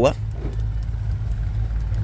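A steady low rumble runs under the window, with the tail of a spoken syllable at the very start.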